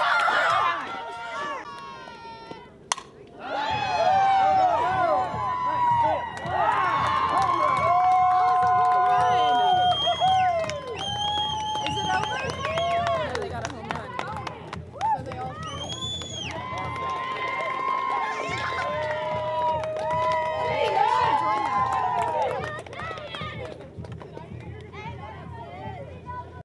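Softball players shouting and cheering together in high voices, with long drawn-out yells overlapping. There is a short lull with a single sharp click about three seconds in.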